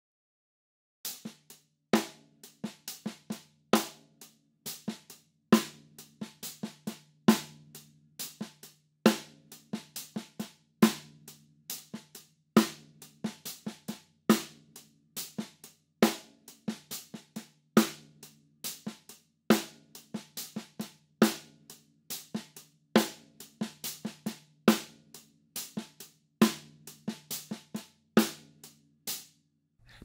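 Open-handed funk hand pattern on a drum kit: steady eighth notes on Meinl Byzance 15-inch hi-hats under a Tama Starclassic copper snare playing loud backbeats and quiet 16th-note ghost notes, with no bass drum. It starts about a second in and stops just before the end.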